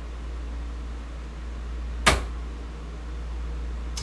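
Quiet room tone with a steady low hum, broken by a single sharp tap or click about two seconds in.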